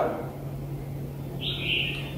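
A bird's single short, high chirp about one and a half seconds in, over a faint low steady hum.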